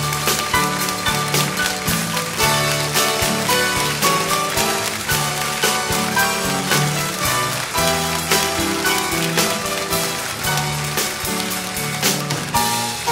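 Instrumental passage from a small live band (piano, accordion, guitar, bass and drums), with a bass line and a steady beat, no singing.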